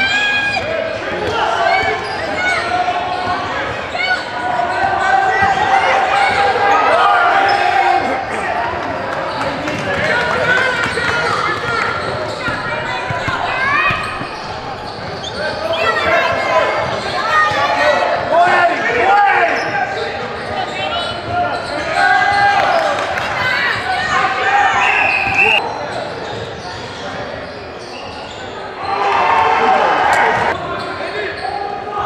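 A basketball bouncing on a hardwood gym floor as it is dribbled, under voices calling out, all echoing in a large gym.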